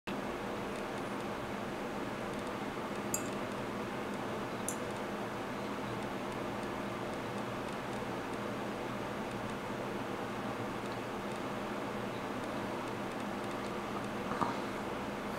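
Steady mechanical room hum, with two short light clicks about three seconds and nearly five seconds in.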